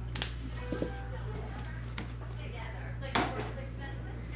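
Steady low electrical hum with a few light clicks and taps of items being handled on a table, the clearest a little after three seconds in.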